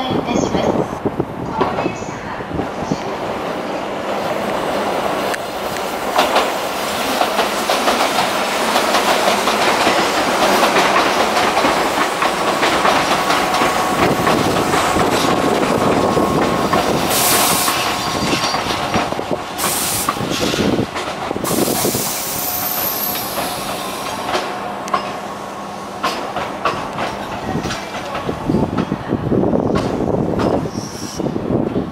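Tobu 8000 series electric train running past on the station tracks: wheels clacking over rail joints under a steady rumble, with a faint steady tone and a few brief high wheel screeches in the second half.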